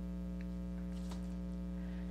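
Steady electrical mains hum in the recording, a low buzz with many even overtones, with a couple of faint clicks about half a second and a second in.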